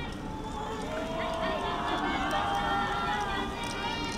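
Voices of several people calling out at once, some in long drawn-out calls, with a few sharp clicks near the end.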